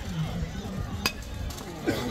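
A metal youth baseball bat hitting a pitched ball once, a sharp ping about a second in.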